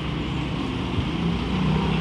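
Busy city street noise with the steady low hum of a nearby motor vehicle engine, growing slightly louder about halfway through.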